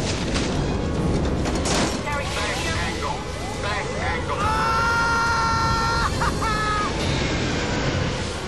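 Film sound mix of an airliner in violent turbulence: a loud continuous rumble with crashes and booms, music, and voices. About halfway through, a long high note is held for nearly two seconds.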